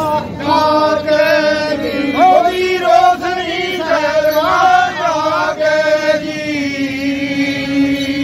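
Punjabi folk singing in chant style, a melody line rising and falling over a steady held drone, with a bowed folk sarangi.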